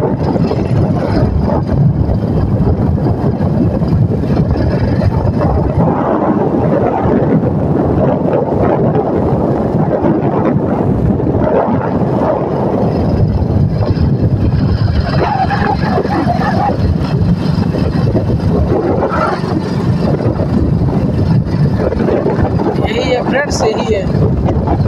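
Wind buffeting the phone's microphone: a loud, steady low rumble with no breaks.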